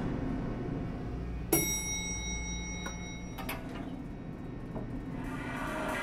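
Elevator sounds under a low steady hum: a sudden ringing ding about a second and a half in that holds for about two seconds, followed by two sharp clicks.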